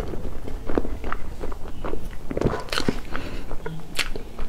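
Close-miked chewing of a soft mouthful of cake, with irregular wet mouth clicks and smacks.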